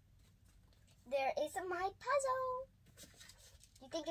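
A young girl's voice in two short bursts of speech or vocalizing, with faint taps in the pause between them.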